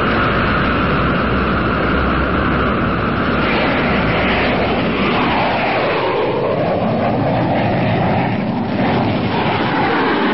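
Radio-drama sound effect of a twin-jet airplane's engines running up, a loud steady rush whose pitch dips and then climbs again past the middle.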